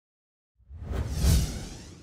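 Whoosh sound effect for a news-segment logo intro, with a deep rumble under a bright airy hiss. It rises from silence a little after the start, peaks just past the middle and fades away.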